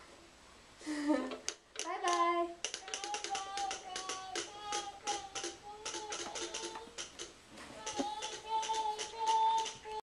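A young child's voice singing in held notes, over a quick, irregular run of clicks and rattles from a wooden push-wagon being pushed across the floor.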